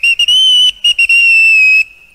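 Small steam locomotive's whistle sounding a quick run of short, high toots and then one longer held toot that cuts off near the end: little whistles of joy.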